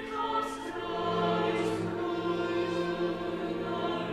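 Chamber choir singing sustained chords in a live performance, with a string quartet accompanying. Lower held notes come in about a second in, and sung 's' consonants hiss briefly a few times.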